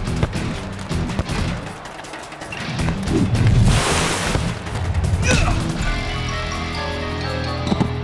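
Cartoon action music with sound effects: a sharp hit right at the start, a burst of rushing whoosh a little after the middle, and quick hits and thuds throughout over a steady musical backing.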